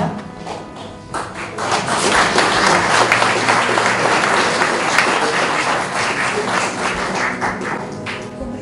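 Audience applauding, the clapping starting about a second in and easing off near the end.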